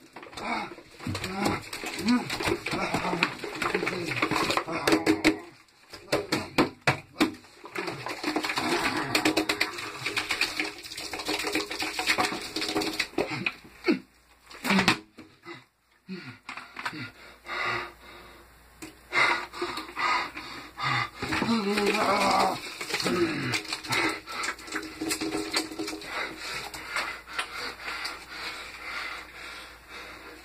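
Wordless vocal sounds from a young person (sighs, grunts and laughter) over scattered clicks and wet squelches of hands kneading glue-and-detergent slime.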